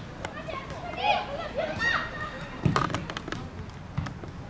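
Young football players' high-pitched shouts and calls on the pitch, with a few sharp knocks, the loudest about three seconds in.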